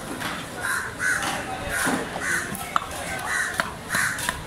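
Crows cawing over and over, two or three calls a second. A few sharp knocks come from a heavy knife chopping tuna on a wooden block, the clearest near the end.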